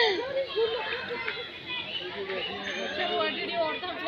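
Children playing and calling out, several voices overlapping in a steady babble.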